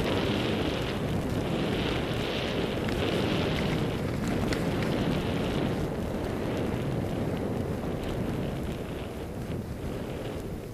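Wind rushing over the microphone of a head-mounted camera on a skier going downhill, with the hiss of skis running over snow. The higher hiss fades about two thirds of the way through and the rush eases toward the end as the skier slows into deep powder.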